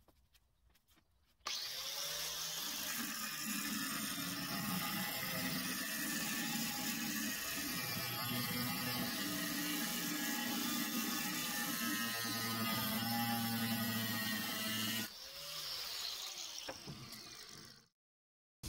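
Corded Makita angle grinder with a cut-off disc spinning up, then cutting steadily into a steel plate to widen a groove for about thirteen seconds, then winding down with a falling pitch.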